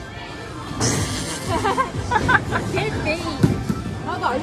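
Background music with people's voices talking over it, and a dull thump about three and a half seconds in.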